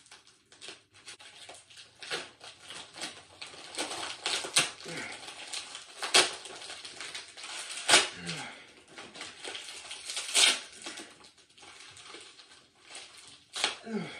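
Plastic packaging crinkling and crackling as it is pulled and twisted by hand to be torn open, with several louder sharp snaps spread through.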